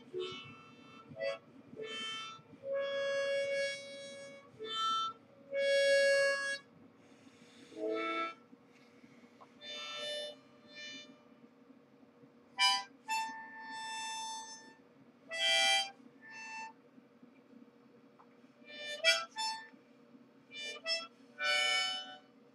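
Solo harmonica, played in short phrases of separate notes and chords with pauses between them, some notes held for about a second, others quick and short.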